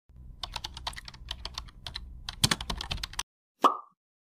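Keyboard-typing sound effect: a quick run of clicks lasting about three seconds, then a single short pop just before the end.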